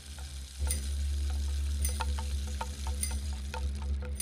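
Meditation music: a deep steady drone under struck bell-like tones that ring out about once a second, with an even hiss that comes in about half a second in.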